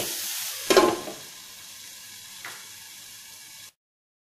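Diced bitter gourd and jackfruit seeds sizzling in oil in a non-stick frying pan, with one louder stirring scrape under a second in. The sizzle then goes on faintly and cuts off suddenly near the end.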